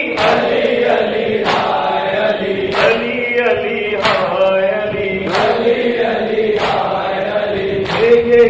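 A crowd of men chanting a mourning lament in unison, with the sharp slaps of hands beating on chests in time with it, about one every 1.3 seconds.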